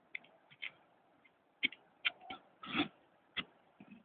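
Hand digging in stony soil: short, irregular scrapes and knocks as earth and stones are scraped out of a hole, about eight in a few seconds.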